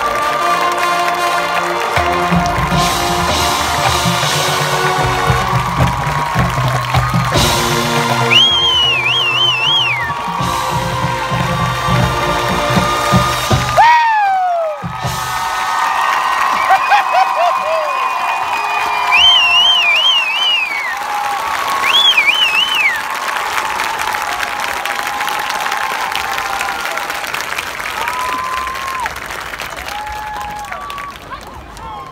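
High-school marching band playing its closing chords over drums, cutting off abruptly about halfway through, then crowd cheering and applause with high whoops, slowly fading.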